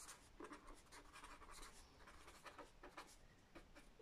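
Faint scratching of a pen writing on paper in a run of quick short strokes.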